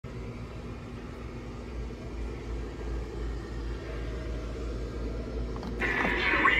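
Steady low rumble and hum of shop background noise. Just before the end a louder sound with pitched tones cuts in abruptly.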